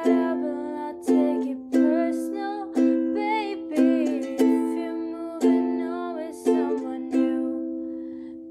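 Ukulele strumming chords, a strum roughly every second, each ringing out and fading, with a wavering higher melody line over the chords.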